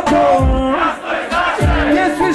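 Crowd shouting along with a live hip-hop track over the club PA. The bass drops out for a moment about a second in.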